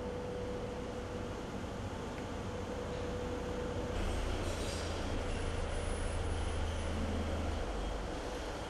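Rally car running, a steady low rumble of engine and road noise that grows louder about four seconds in.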